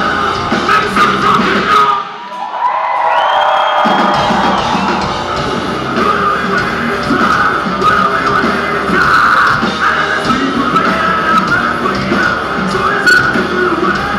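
Heavy rock band playing live in a club, recorded on a phone from the crowd. About two seconds in, the drums and bass drop out for roughly two seconds, leaving only sustained higher notes, then the full band crashes back in.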